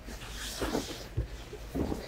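Clothing rustling and a few dull low thumps as a person climbs into a minivan's third-row seat.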